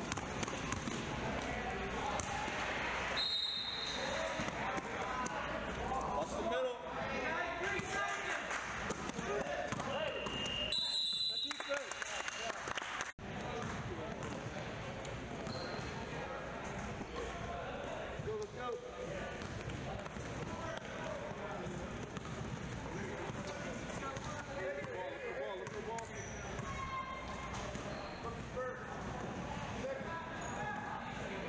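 Basketball game sound in a gym: a ball dribbling and bouncing on a hardwood court, with players' and spectators' voices and shouts throughout.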